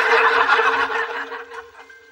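Studio audience laughing, loud at first and dying away over about a second and a half.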